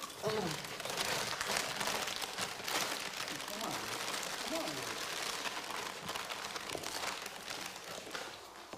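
Plastic bags and food wrappers crinkling and rustling as they are handled, with short bits of low voices under it.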